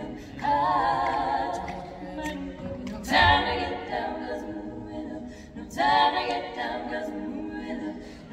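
Female barbershop quartet singing a cappella in close four-part harmony, with vibrato on a held chord near the start. There are strong accented entrances at about half a second, three seconds (with a low thump) and six seconds in.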